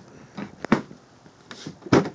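A few separate clicks and knocks as a Harley-Davidson hard saddlebag lid is handled and shut, the loudest knock near the end.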